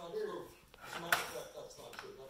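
Hard plastic toys knocking on a tile floor: a small click about three-quarters of a second in, then a louder sharp clack just past a second in. Quiet voices in the background.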